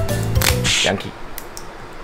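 Background music with a steady beat that stops about a second in. Over it comes a short, sharp rasp of thin paper as a small lottery ticket is torn open by hand.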